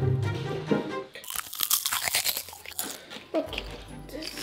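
A dense crunching, crackling noise lasting about a second and a half in the middle, over background music.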